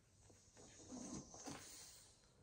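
Faint rustle of a picture-book page being turned by hand, a soft paper swish with two small peaks about a second in and again half a second later.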